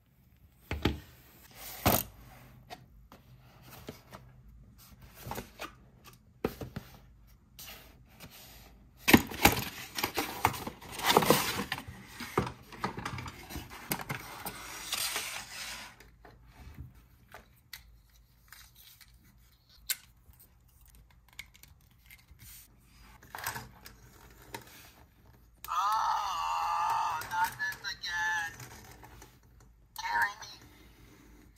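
Clicks, taps and rustling of plastic toys being handled, with a louder stretch of rustling and scraping in the middle. Near the end an interactive talking Forky toy speaks a recorded phrase through its small speaker.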